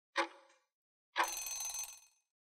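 Countdown-timer sound effect: one short tick, then about a second later a ringing bell-like alarm lasting under a second that signals time is up.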